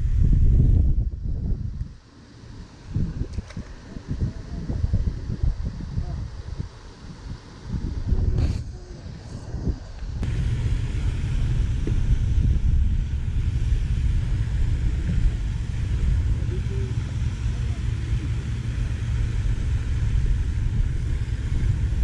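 Wind buffeting the microphone as a low rumble, with rustles and knocks from handling the fishing line and rod in the middle. From about ten seconds in, a steady rumble with a hiss above it.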